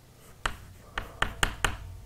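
Chalk on a blackboard: a series of short, sharp taps and strokes as chalk is written on the board, about half a dozen quick clicks bunched in the second half.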